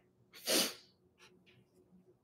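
A single short, sharp breath noise from a person, about half a second in: a quick rush of air through the nose or mouth with no voice in it.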